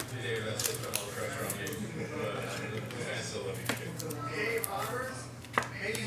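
Soft plastic rustling and a few sharp clicks as a trading card is slid into a penny sleeve and a rigid plastic top loader, over a steady low hum.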